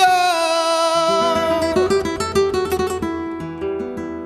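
Flamenco music: a long held note dies away over the first two seconds while a flamenco guitar plays a fast run of plucked notes, which thins out and fades near the end.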